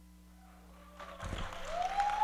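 A faint steady electrical hum, then about a second in an audience starts applauding and cheering, growing louder, with one long rising whoop.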